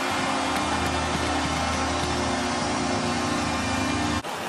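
Hockey arena goal horn sounding one long steady blast over a cheering crowd, signalling a home-team goal.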